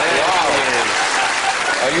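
Studio audience applauding, a dense steady clapping, with some voices mixed in.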